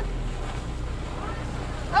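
Steady low hum of a sailboat's engine running at slow speed while the boat is manoeuvred to anchor, with wind noise on the microphone.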